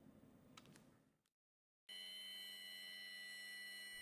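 Near silence, then after a brief dead gap a faint steady whine of several held tones, the background of a robotic casting-grinding cell.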